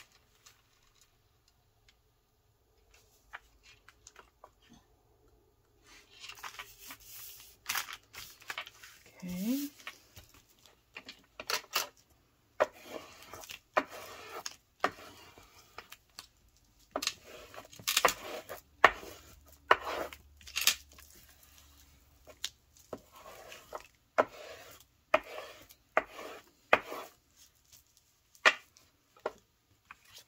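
Paper sheets being handled, slid and rubbed flat on a cutting mat, with scattered short taps and clicks of hard objects on the work surface.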